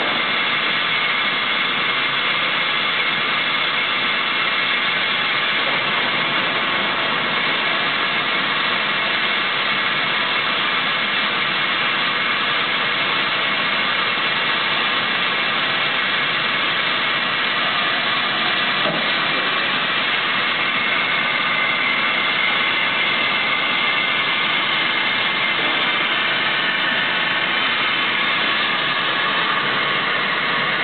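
Haeusler initial double pinch plate bending rolls running under power: a steady, unchanging machine drone with a thin high whine over it.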